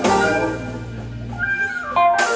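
Live band playing, with a saxophone lead holding and bending a note over bass and keyboard.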